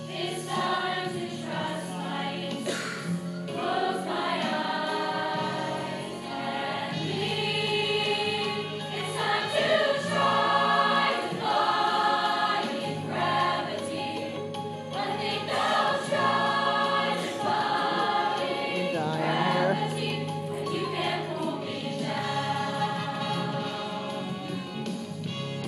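Mixed choir singing sustained notes in harmony, swelling louder now and then.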